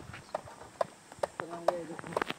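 Footsteps on loose gravel and rock, sharp steps about two a second, with a short stretch of voice near the end.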